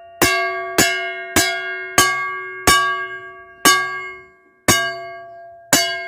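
A large segmented saw blade for cutting asphalt and concrete, hung by its rim and struck eight times with a metal rod; each strike rings like a bell with several clear tones that fade before the next. It is a test of the recycled disc's steel, to tell whether the blade is good for making knives.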